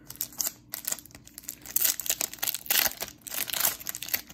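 A foil trading-card pack wrapper crinkling and tearing as it is pulled open by hand, in quick irregular crackles that begin shortly after the start.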